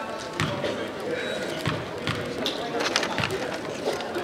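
A basketball bouncing on a hardwood gym floor several times, over the chatter of a gym crowd.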